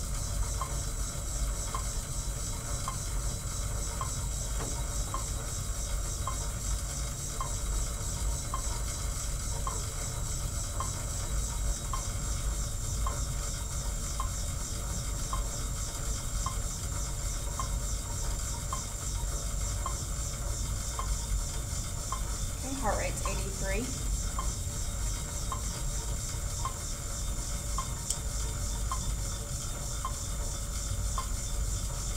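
Monark pendulum cycle ergometer being pedalled against its friction belt at 0.5 kp: a steady whirring hiss from the flywheel, with a light regular click about every 0.7 seconds. A brief squeak slides up and down in pitch about 23 seconds in.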